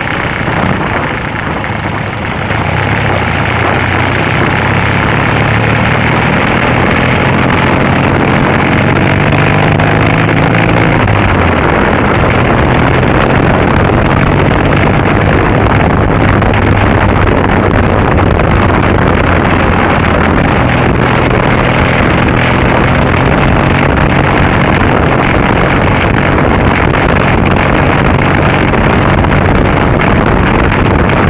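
Triumph Bonneville's parallel-twin engine pulling along the road, heard from a bike-mounted camera under heavy wind noise. The engine note climbs for the first ten seconds or so, falls away sharply about eleven seconds in, then holds steady.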